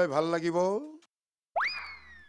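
A man's speech breaks off about a second in. After a short gap, a comic swooping sound effect plays: a quick upward sweep, then a slow falling whistle-like tone.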